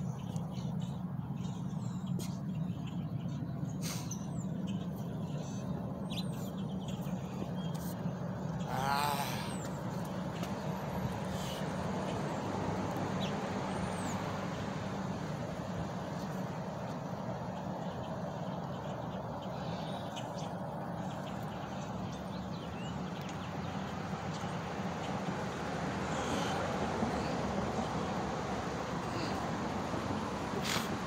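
Steady outdoor background rumble, like distant traffic, with a few faint bird chirps and a brief wavering sound about nine seconds in.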